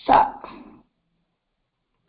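A single short dog bark.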